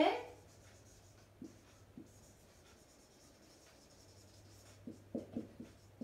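Marker pen writing on a whiteboard: faint strokes with a few light taps, and a quicker run of strokes near the end.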